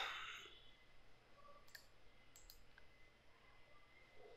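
Near silence with a few faint computer mouse clicks around the middle.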